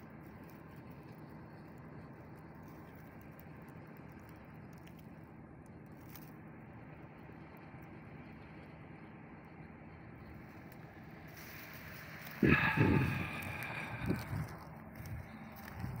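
Faint, steady outdoor background noise, with a short louder sound about twelve seconds in.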